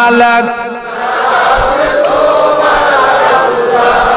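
Many male voices of a congregation chanting together in a long, wavering unison chant, taking over about a second in after a solo sung voice breaks off.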